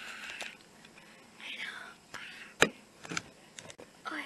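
A girl whispering in breathy, unclear sounds, with one sharp click a little past halfway, the loudest sound, and a few fainter clicks after it.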